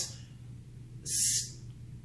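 A single short breath hiss, about half a second long, about a second in, over quiet room tone with a faint steady hum.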